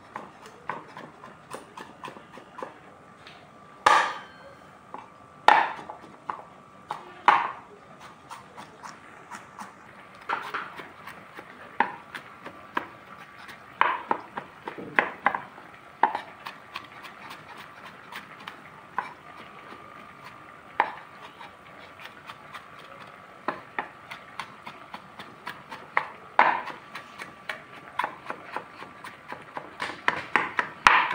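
Meat cleaver chopping garlic on a wooden cutting board: a run of irregular knocks of the blade on the board, with a few much louder strikes about four to seven seconds in.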